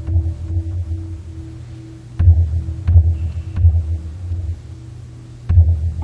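Large temple drum struck with heavy, deep strokes: one at the start, three in quick succession from about two seconds in, and another near the end. A steady, pulsing ringing tone hangs underneath throughout.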